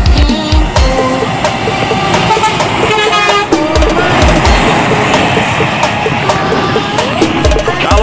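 A semi-trailer truck's horn sounding as the truck passes, over electronic music with a heavy beat.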